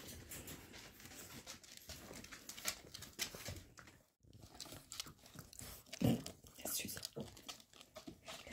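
Close rustling and scuffling as a Shar-Pei puppy scrambles about and is handled on a person's lap, fur and clothing rubbing near the microphone, with a soft thump about six seconds in. The sound cuts out briefly about four seconds in.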